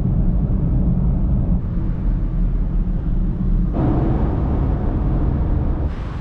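Steady low road and engine drone inside a small 1.3-litre car cruising on a highway. About two-thirds of the way through, the sound turns brighter, with more hiss in the middle range.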